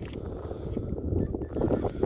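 Wind buffeting the microphone, a low uneven rumble, with light handling noise from a flip phone being held and turned close to it.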